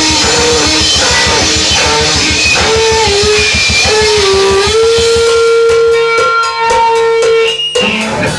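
Live rock band playing loud: a lead guitar line with bent notes over fast, even drumming, then a long held note over sparser hits. The music cuts out briefly just before the end.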